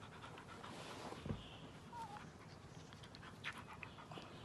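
A dog panting softly while it mouths a person's arm in play, with a few small clicks and a soft low thump about a second in.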